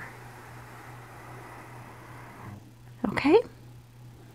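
Pencil drawing one long stroke on drawing-pad paper, a soft steady scratch that stops about two and a half seconds in. Half a second later comes a short voiced sound rising in pitch.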